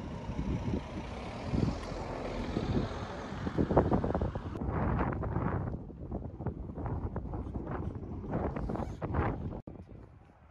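Wind buffeting the microphone at a seaside shore, an uneven low rumble in gusts. The high hiss drops away about halfway through, and the sound cuts off briefly just before the end.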